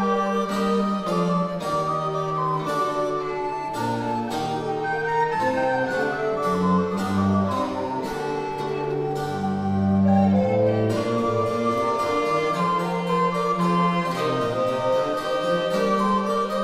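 Early music consort playing a Renaissance-style piece: plucked-string attacks in a steady pulse over held, sustained melodic lines.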